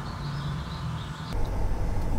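Low rumble of a camper vehicle driving, heard from inside the cab. About a second and a half in, it cuts abruptly to a louder, deeper rumble.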